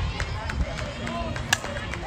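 A softball bat striking the pitched ball once, a single sharp crack about one and a half seconds in, over spectators' chatter.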